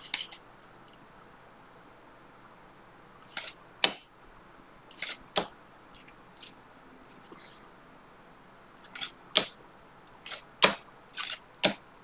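Stack of cardboard trading cards flipped through by hand: short, sharp card snaps at irregular intervals, about a dozen in all, bunching toward the end.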